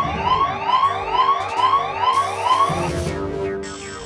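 Electronic siren-like whooping cartoon sound effect, a rising whoop repeated about three times a second over a steady hum. The whooping stops about three seconds in, and a high hiss comes in as it ends.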